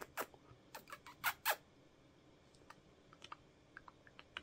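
Kissing noises made with pursed lips to call pet rats: a string of short sharp smacks, the loudest two about a second and a half in, followed by fainter ticks.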